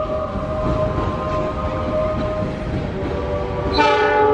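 Trains rolling through a station yard with a steady low rumble, then near the end a train horn sounds loudly and holds.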